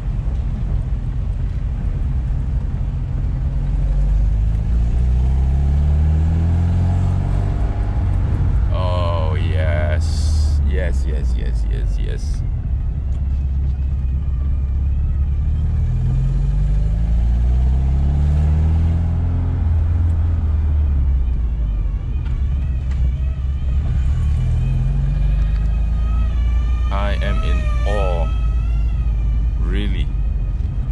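Alfa Romeo Alfetta engine heard from inside the cabin while driving. It rises in pitch as the car accelerates, about a quarter of the way in and again about halfway, and settles in between. It pulls cleanly with no more sputtering.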